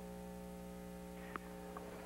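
Steady electrical hum, with two light knocks about a second and a half in, under half a second apart: a tennis ball tapped softly off a racket and bouncing on the hard court.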